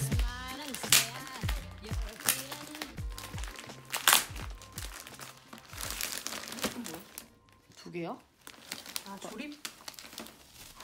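Clear plastic film wrapping crinkling as cardboard panels are pulled out of it, with sharp crackles about one, two and four seconds in, over background music.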